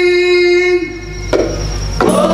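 A male lead singer holding one long, steady note of a mawal through the stage PA, ending about a second in; after a short lull comes a single sharp hit.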